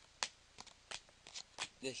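Pokémon trading cards being thumbed one by one off a hand-held stack, each card snapping against the next in a series of five or six short flicks.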